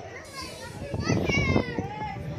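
Children's voices at play in the water, with one high-pitched rising call about a second in.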